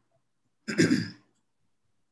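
A man's single throat-clearing cough, one short burst of about half a second, heard over a video call.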